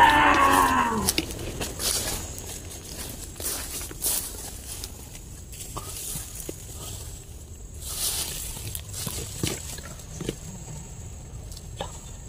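One long drawn-out call right at the start, lasting about a second and a half and sliding down in pitch at its end, like a cow's moo. After it come quieter scattered snaps and rustles of steps through undergrowth.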